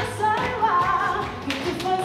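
Live pop song: a woman sings into a microphone over a backing of music with a steady drum beat.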